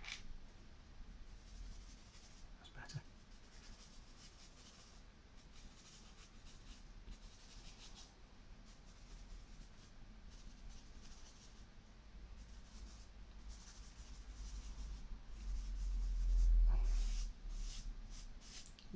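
A stick of charcoal scraping across pastel paper in quiet, repeated strokes, with a louder low bump of the hand or paper near the end.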